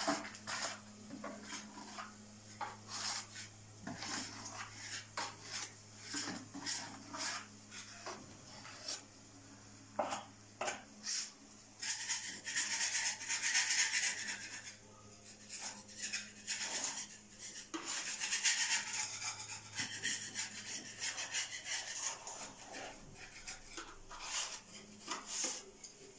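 Intermittent scraping and rubbing with many light clicks and knocks, thickest about halfway through and again a little later, over a low steady hum.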